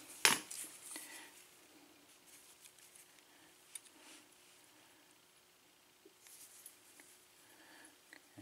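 A small metal pin-tumbler lock cylinder handled in the fingers: one sharp metallic click just after the start, then a few faint clicks and scrapes of its metal parts.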